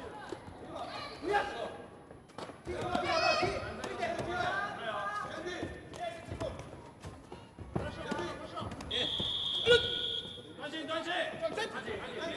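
Taekwondo sparring heard in a sports hall: shouting voices, thuds of kicks and feet on the mat, and a loud hit about ten seconds in. A steady high-pitched tone sounds for about a second and a half near the end, as the bout is halted.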